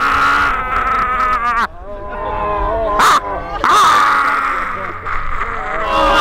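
Several men giving loud, long, wavering wordless yells and wails that overlap, with a short break just before two seconds in. These are the staged cries of a mock battle under a volley of arrows.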